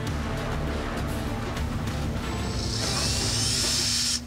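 Yellow cordless drill whirring, driving screws into the wooden base board, from about halfway through with a faintly rising whine. Background music plays throughout.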